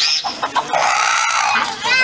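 Domestic chickens calling in a pen: a short high call at the start, then one long harsh call lasting about a second in the middle.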